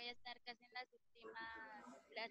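A faint, choppy voice coming through a video call, broken into short pieces, with one longer drawn-out sound about halfway through.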